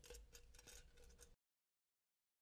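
Faint clicks and scrapes of an aluminium beverage can and metal cutting pliers being handled during a manual can-seam teardown, over a low steady hum. The sound cuts off abruptly to dead silence about a second and a third in.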